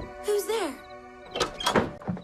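A short voiced sound with a falling pitch, then a cluster of sharp thunks from a wooden door near the end, over soft film-score music.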